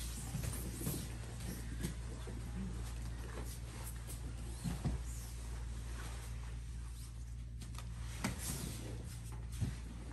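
Gi fabric rustling and bodies scuffing and shifting on foam grappling mats, with a few soft thumps, over a steady low hum.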